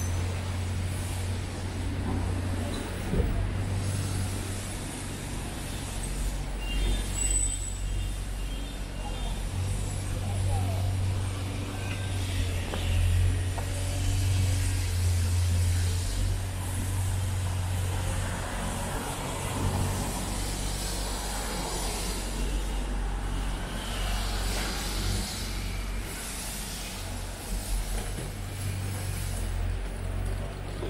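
City street ambience: passing traffic with a steady low rumble and scattered voices of passers-by. A short run of high beeps sounds about seven seconds in.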